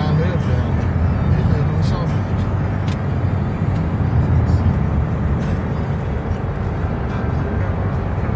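Steady low road and engine rumble heard inside a moving car's cabin.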